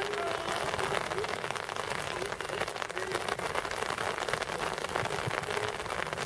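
Steady rain falling, an even hiss of many fine drop ticks close to the microphone, with faint distant voices now and then.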